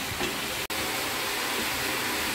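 Shredded cabbage frying in a steel kadai over a gas flame: a steady sizzling hiss, cut off for an instant just under a second in.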